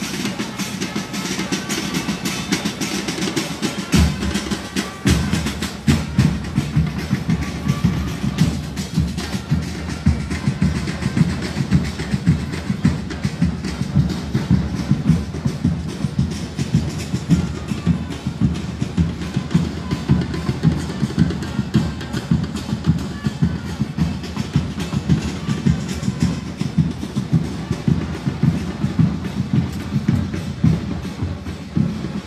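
Drums beaten by protesters: a single strike about four seconds in, then a steady rhythmic drumbeat from about five seconds on.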